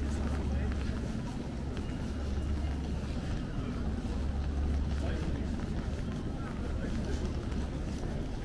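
Busy pedestrian street ambience: passers-by talking over a steady low rumble of city noise.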